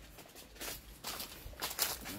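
Footsteps on a path covered with dry fallen leaves: a few irregular steps, the loudest near the end.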